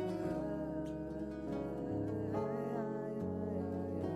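Acoustic guitar playing a melodic instrumental passage of picked notes over held low bass notes, as part of a live band arrangement.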